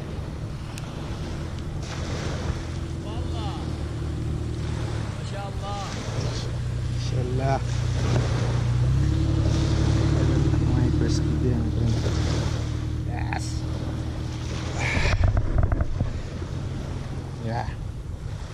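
A steady low engine hum that shifts in pitch about halfway through, over wind on the microphone, with a louder gust near the end.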